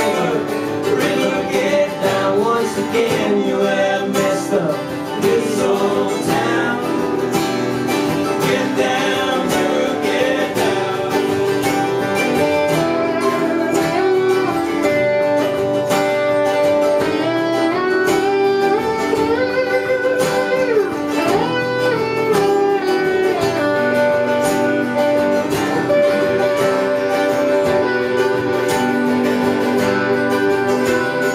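Instrumental break of an acoustic country song played live. A lap steel guitar plays a sliding lead over strummed acoustic guitar and mandolin.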